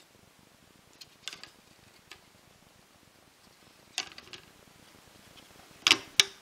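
A few light, sparse clicks and taps from handling small parts: a Naze32 flight controller board being pressed down onto nylon screws and spacers on a carbon-fibre drone frame. The sharpest click comes near the end.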